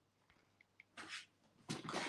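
A quiet pause with a faint, short breath about a second in.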